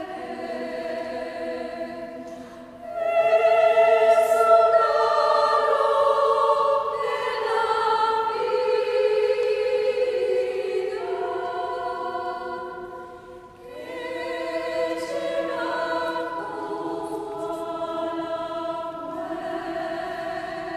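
Mixed choir of men and women singing a slow vidala, an Argentine folk song, in parts with no instruments. The voices hold long notes, ease off briefly at the ends of phrases about 3 s and about 13 s in, and come back in louder each time.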